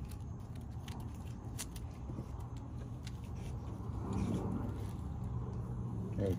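Steady low outdoor rumble with a few faint clicks in the first half and a brief soft sound about four seconds in.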